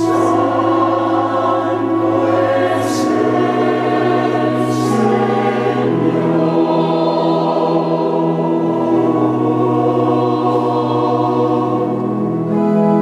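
Mixed choir of men's and women's voices singing in long sustained chords, with sharp sibilant consonants standing out twice, about three and five seconds in.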